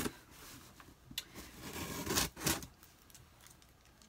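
Scissors cutting through the packing tape on a cardboard shipping box: a short scraping stroke about a second in, then two louder strokes around two seconds in.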